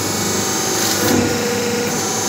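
Semi-automatic hydraulic single-die paper plate making machine running, a steady mechanical hum from its hydraulic pump motor. A faint held tone sits over it in the second half.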